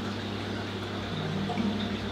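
Steady low hum with a wash of moving water from a marine aquarium's water-circulation equipment running.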